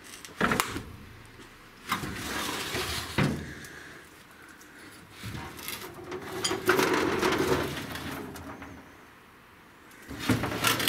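Metal drawers of a large tool cabinet being pulled open and pushed shut: a sharp double knock about half a second in, a scraping slide ending in a knock about three seconds in, then a longer, louder metal scrape from about five to eight seconds in.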